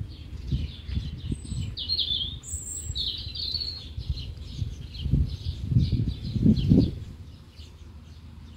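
Small birds chirping in quick short calls, with a brighter, higher burst about two to three seconds in. Underneath, low rumbling thumps come and go, loudest around five to seven seconds in.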